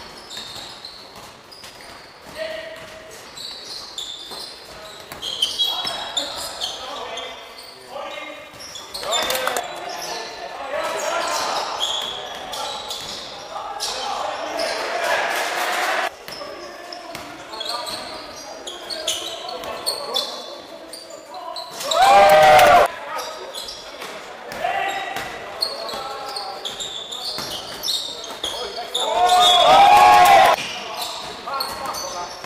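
Basketball game in a large sports hall: a ball bouncing, sneakers squeaking on the wooden court, and players calling out. Two loud shouts stand out, one about two-thirds of the way through and one near the end.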